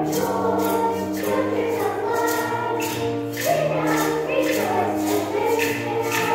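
Children's choir singing a song over instrumental accompaniment, with a percussion beat about twice a second.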